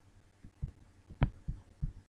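About five soft, low thumps over two seconds, with one sharper click a little past a second in: a computer mouse being clicked and handled on a desk close to the microphone.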